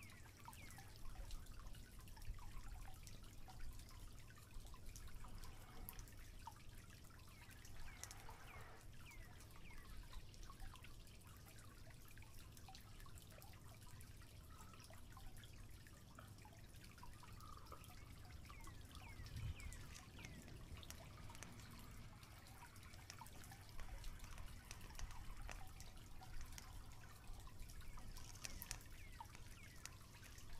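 Quiet outdoor ambience: faint scattered ticks and short high chirps over a low, steady rumble.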